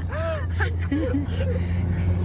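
A person laughing softly in short breathy bursts inside a moving car, over the steady low drone of the car cabin.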